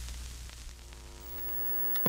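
Old television static: a steady hiss over a low electrical hum. A set of steady high tones comes in about halfway, and a sharp click comes right at the end as the set switches off.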